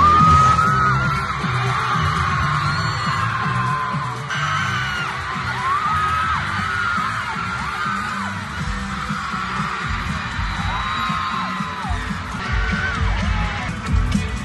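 Live pop concert recorded on a phone in an arena: singing over the band's bass and drums, with the crowd's voices mixed in.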